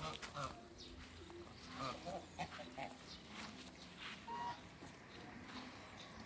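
Ducks calling softly: faint, short, scattered calls and clicks, with one brief clearer note about four seconds in.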